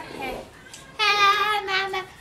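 A high voice holding one long sung note for about a second, beginning about a second in, after a shorter voiced sound at the start.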